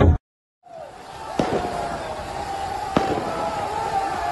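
Firecrackers going off among football supporters: two sharp bangs about a second and a half apart, over a steady held tone. The sound begins after a brief silent gap.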